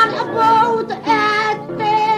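Maltese għana folk song: a high singing voice holding drawn-out notes over acoustic guitar accompaniment.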